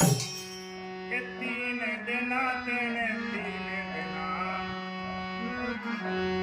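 Harmonium playing a melodic interlude over a sustained reed drone, the melody moving in ornamented runs from about a second in. A last drum stroke sounds right at the start; after that no percussion plays.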